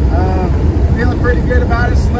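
Steady low drone of a van's engine and tyres, heard from inside the cab while driving, with a man talking over it.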